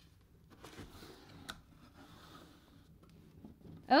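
Faint rustling and handling noise as a cardboard shipping box is opened and its crinkled paper filler shifts, with one small click about one and a half seconds in.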